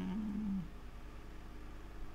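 A man's low sung note, wavering slightly, trails off and ends about half a second in, leaving a faint steady background hum.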